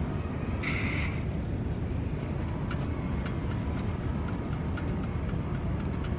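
Steady low rumble of indoor background noise and handheld-camera movement, with a short hiss about a second in. A run of light, evenly spaced ticks, about three a second, starts midway.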